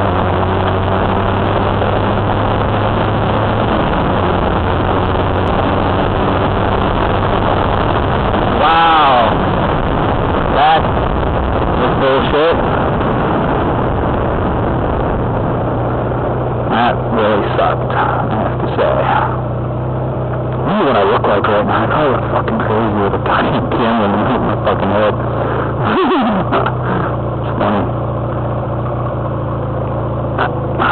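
Honda Rebel 250 motorcycle engine running under way, with wind rushing over a helmet-mounted microphone; the engine pitch rises and falls a few times about nine to twelve seconds in. From about twenty seconds in the wind noise eases and the engine runs steadily.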